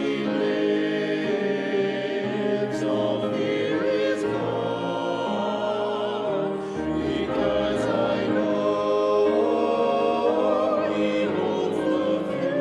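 A small mixed-voice church choir singing in parts, sustained notes with vibrato.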